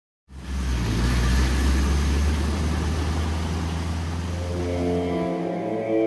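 A van driving: a steady low engine drone with road and tyre noise. Near the end the drone drops away and music with held, pitched notes fades in.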